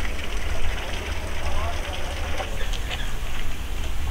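Steady outdoor background noise with a deep, continuous rumble underneath, and a faint voice briefly in the middle.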